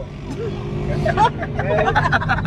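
Car engine and road noise heard from inside the cabin as the car gets moving, a steady low rumble, with people talking and laughing over it.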